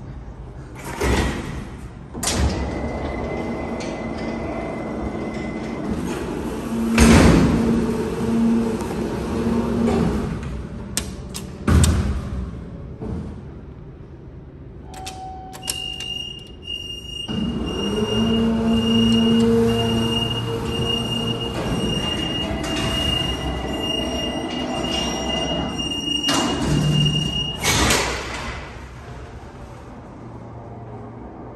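Peelle power-operated freight elevator doors working: clanks and knocks of the door panels, the loudest about seven seconds in. About sixteen seconds in, a steady high warning tone starts and holds for about twelve seconds over a motor hum, and it ends at a heavy thud as the doors shut.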